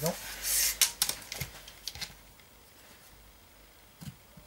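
A steel tape measure and pencil handled on a block of timber: a short scraping slide about half a second in, as the tape blade is pulled out, then a few light clicks and taps over the next second or so.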